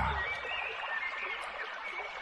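A steady soft hiss with a faint, high, wavering whistle-like tone that lasts about a second in the first half.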